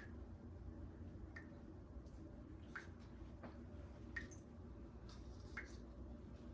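Faint, evenly spaced drips of wet acrylic paint falling from the canvas edge onto the paint-covered table, about one every second and a half, over a low steady room hum.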